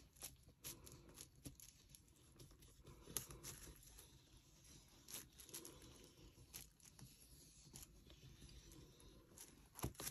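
Near silence with faint, scattered clicks and rustles from hands working a small brush along the edge of a silicone tray mold resting on plastic sheeting.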